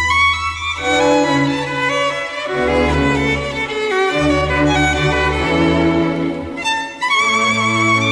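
Orchestral ballet music, a violin carrying a melody with vibrato over sustained low string notes, with a brief break in the phrase about seven seconds in.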